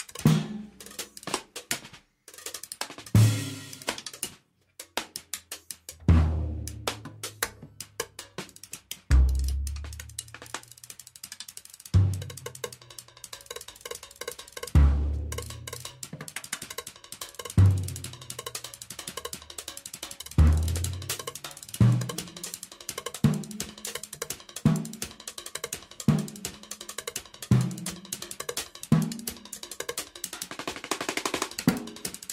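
Experimental solo percussion piece: low, pitched drum strikes that ring out, at first every few seconds and later about every second and a half, over a dense patter of small clicks and cymbal taps. There are two brief gaps of near silence in the first few seconds.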